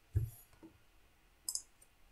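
A computer mouse clicking: a dull knock just after the start, then a sharp double click about a second and a half in as the next slide is selected.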